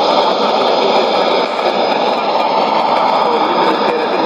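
Steady rushing hiss of white-noise digital jamming from a Sony ICF-2001D shortwave receiver's speaker, tuned to a jammed AM broadcast on 17850 kHz.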